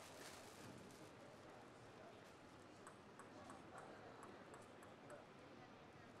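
Near silence with light, faint ticks of a table tennis ball bounced a few times before a serve, about three a second, starting about two seconds in and stopping near the end.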